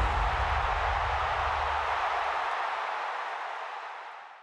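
A steady noisy wash with a low rumble underneath, both fading out; the rumble dies away about two and a half seconds in.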